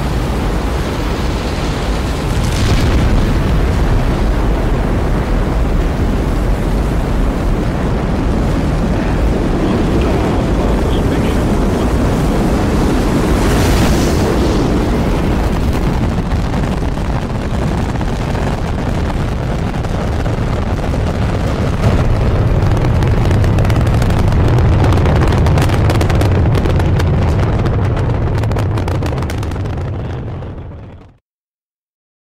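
Space Shuttle Columbia lifting off: the two solid rocket boosters and three main engines running at full thrust in a loud, continuous rumbling roar. The low rumble grows heavier about two thirds of the way through, and the sound fades out at the very end.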